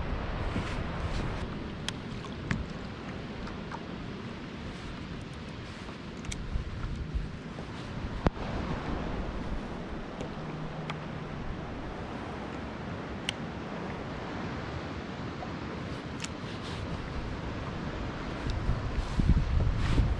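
Wind buffeting the microphone over sea water lapping around the kayak, a steady rushing noise, with a few short sharp clicks scattered through it.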